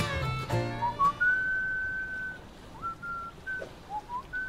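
The end of the title music about a second in, then a person whistling idly: a rising note into one long held note, followed by a few short notes.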